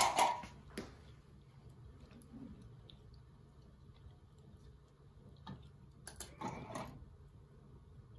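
Quiet room with a low steady hum, a few isolated light clicks, and a short clatter of clicks about six seconds in, as a collaborative robot arm's gripper reaches down into a cardboard box of metal electrical boxes.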